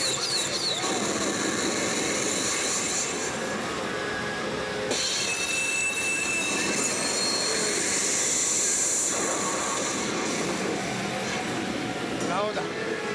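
Pachinko parlor din: a loud, steady rushing noise of the CR Hokuto no Ken 5 Hasha machine and the parlor around it, with the machine's battle sound effects. The effects change about five seconds in, with a short high steady tone, and change again near nine seconds.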